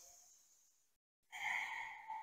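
A woman's long, audible breath through the mouth, starting a little past the middle and running on, taken while holding a deep squat; before it there is only faint room hiss.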